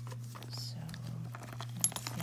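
Small items tapping and clicking as a hand slips them into a caviar-leather flap bag, with one sharp click near the end.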